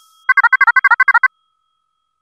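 Short electronic sound effect: a rapid trill of about a dozen quick falling chirps in about a second, like a phone notification tone, then it stops.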